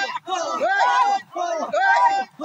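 A group of voices chanting together in rhythm: short, arching calls that rise and fall in quick succession, broken by brief pauses. This is a communal work chant for field labour.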